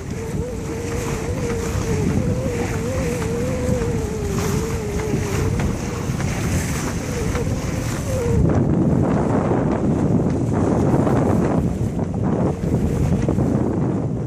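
Wind buffeting the microphone and water washing past the hull of a sailboat under way, a continuous loud rush. A single wavering tone runs through the first half and stops about eight seconds in, after which the wind rush grows louder.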